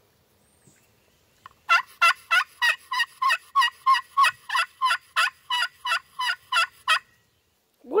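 Quaker Boy Magic Touch glass friction pot call worked with a striker, giving a run of about seventeen evenly spaced turkey yelps at about three a second. The yelps start about two seconds in and stop near the end.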